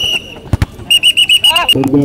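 Referee's whistle in a futsal match: the end of one longer blast, then about a second in a quick run of about six short, shrill blasts. A single thud, like a ball being kicked, comes between them.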